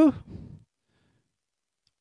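The end of a man's spoken word fading out in the first half second, followed by silence in a speaking pause.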